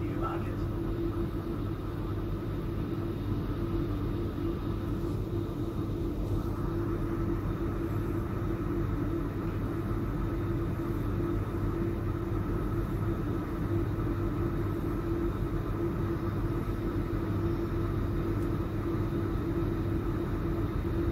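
Steady hum of a powered-up AM class electric multiple unit's onboard equipment, heard inside the passenger saloon: a constant mid-pitched drone with a fainter higher tone, unchanging throughout.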